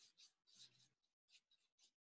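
Very faint scratching of a drawing tool on paper, in short strokes a few times a second.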